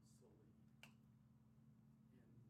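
Near silence over a low steady hum, broken by a single sharp click about a second in.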